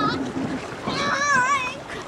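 A child's very high-pitched voice calls out once, about a second in, wavering up and down in pitch for under a second, over a steady background of wind and water noise.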